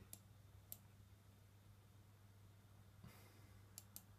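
Near silence: a few faint computer mouse clicks, one about a second in and two near the end, over quiet room tone with a low steady hum.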